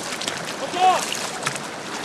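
Voices shouting outdoors, short high rising-and-falling calls with the loudest just under a second in, over a steady rushing background noise.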